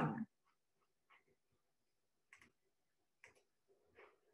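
Near silence broken by four faint, short clicks spaced roughly a second apart.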